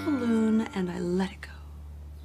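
A soft, breathy human voice with gliding pitch for about the first second, over a low steady hum; after that the hum continues alone at a lower level.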